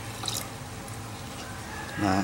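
Water poured from a clear plastic jar into a plastic basket standing in a tub of water: a short splash near the start, then faint trickling and drips over a steady low hum.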